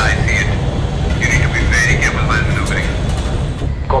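Steady low rumble of a fighter jet's engine from the film's cockpit soundtrack, with a thin, radio-filtered pilot's voice over it from about one second in until nearly three seconds.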